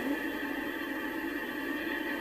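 A steady hum of several held tones with a faint hiss, unchanging throughout.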